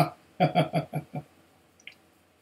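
A man laughing: a quick run of about five short laughs, coming just after a loud first one right at the start.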